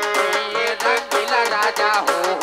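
Live Gujarati folk music with a steady drum beat of about four beats a second under a wavering melody.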